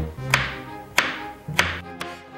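Kitchen knife chopping vegetables on a plastic cutting board: three sharp knocks about 0.6 s apart, over background music with sustained low notes.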